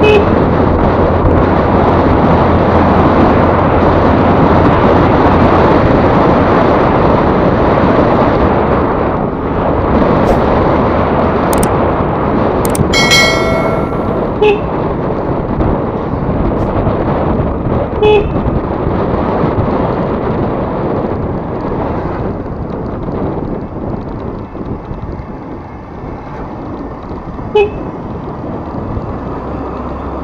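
Wind rushing over the microphone of a camera on a moving scooter, with road noise, steady throughout. A vehicle horn toots several times: one longer toot about halfway through and short beeps before and after it.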